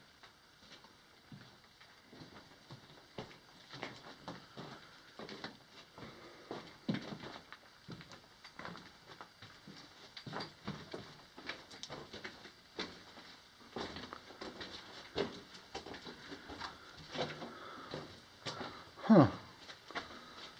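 Footsteps crunching and scuffing irregularly on loose rock and gravel in a rock tunnel, starting about two seconds in. Near the end a brief downward-sliding sound stands out as the loudest moment.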